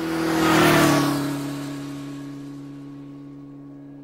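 Logo-sting sound effect: a whoosh that swells to a peak under a second in and fades, over a held low chord that slowly dies away.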